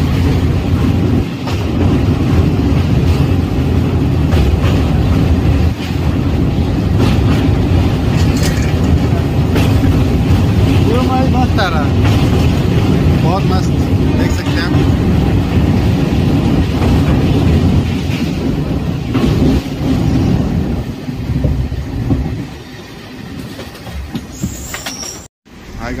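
Loud, steady rumble of a passenger train's wheels running on the rails across a steel truss river bridge, heard from inside the train. It gets quieter about 22 seconds in and cuts out for a moment near the end.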